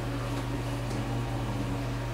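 Steady low hum of background room tone, with no other distinct event.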